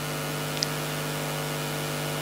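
Steady low electrical hum with a light hiss from the hall's microphone and sound system, and a tiny faint tick about half a second in.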